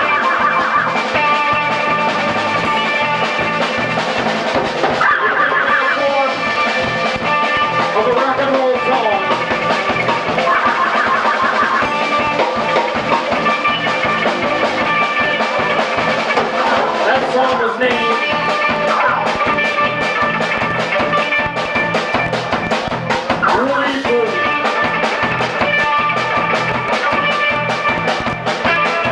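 Rock band playing live: electric guitar, electric bass and drum kit with a steady beat.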